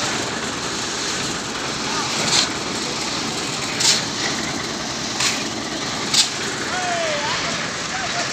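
A concrete mixer churning concrete, with sharp metallic clanks of shovels and pans four times and workers calling out faintly.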